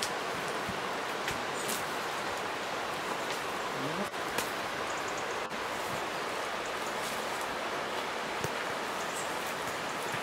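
Steady rushing noise, like running water, with scattered faint rustles and snaps of brush and twigs.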